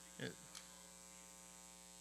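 Near silence with a steady electrical hum, a low buzz made of many even tones.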